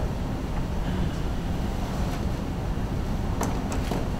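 Steady low rumble of room noise, with a few light clicks near the end.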